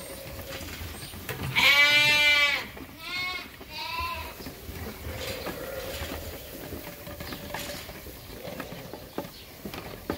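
Lambs bleating: one long, loud bleat about a second and a half in, then two shorter bleats about a second apart, with only faint sound after.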